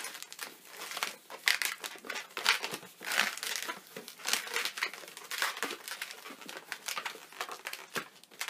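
Latex modelling balloons rubbing and squeaking against each other and the hands as they are twisted and wrapped, in a quick irregular run of short squeaks and rubs.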